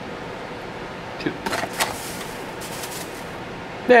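Paper sugar bag crinkling as it is handled, in a few short crisp rustles, over a steady background hum.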